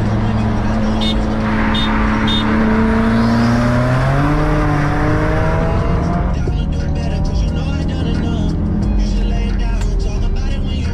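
Hyundai Genesis 4.6 V8 running hard at full throttle in a roll race, heard from inside the cabin. Its engine note climbs in pitch around four seconds in under heavy road and engine noise, and the noise drops away about six seconds in as the throttle eases. Three short high beeps sound between one and two and a half seconds in.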